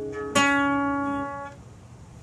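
Acoustic guitar fingerpicked with a capo at the sixth fret. Notes from the previous plucks ring on, then a single new note is plucked about a third of a second in, rings and dies away, and is cut off at about one and a half seconds.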